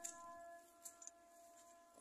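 Near silence: faint steady high tones and a few soft clicks.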